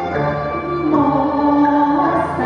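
A woman and a man singing a Cantonese opera duet into microphones over instrumental accompaniment, in long held notes that step up and down in pitch.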